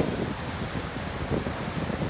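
Wind buffeting the microphone over the steady wash of small waves breaking on a sandy shore.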